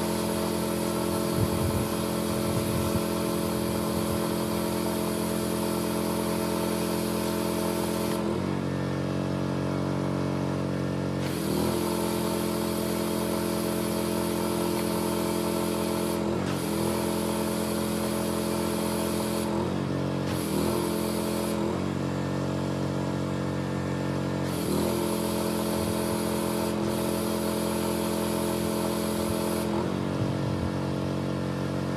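Pressure washer running steadily, its engine note constant under the hiss of the wand's spray. The spray cuts out and starts again several times as the trigger is released and pulled, with the longest pause about a third of the way in, and the engine note shifts slightly at each stop and start.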